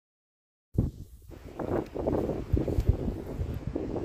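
Silent for under a second, then wind buffeting the microphone, a rough, uneven low rumble.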